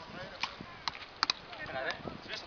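Wooden beach-racket paddles striking a small ball: sharp, hollow knocks, irregularly spaced, with a quick double knock a little past the middle. Faint voices lie underneath.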